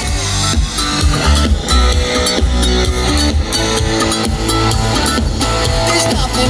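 Pop-rock band playing electric guitar over bass and drums, with a steady beat.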